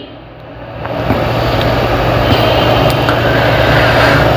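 A steady mechanical drone: a low hum under a broad hiss, fading in over about the first second and then holding level.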